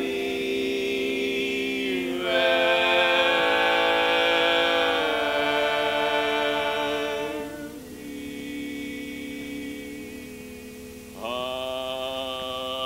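Male barbershop quartet singing sustained four-part a cappella chords, with no instruments. A chord swells louder about two seconds in, the sound softens to a quieter held chord near eight seconds, and a fresh chord comes in near the end.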